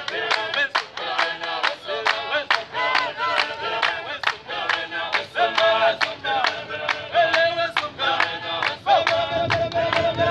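Ndebele traditional dancers singing together in a male chorus while clapping their hands in a steady beat, about two to three claps a second.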